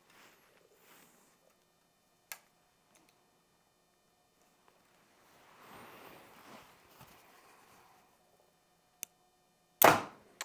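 A Bowtech Eva Gen 3 compound bow is shot once near the end, a single sharp crack as the string is released and the 450-grain arrow leaves. Before it there are only a few faint clicks and a soft rustle of the bow being handled and drawn.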